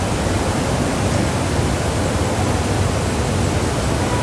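Steady hiss across the whole range with a low hum underneath, with no distinct events.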